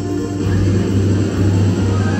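Live rock band playing an instrumental passage, with a strong held bass note under drums and electric guitar.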